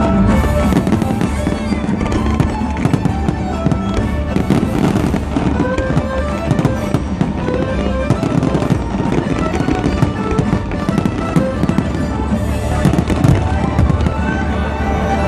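Aerial fireworks bursting and crackling in rapid succession, with many sharp bangs, over loud music, the bursts thickest about four to five seconds in and again near the end.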